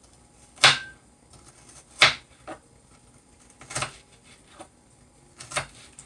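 Knife chopping a pepper on a cutting board: four sharp knocks spaced a second and a half or more apart, with a few lighter taps between.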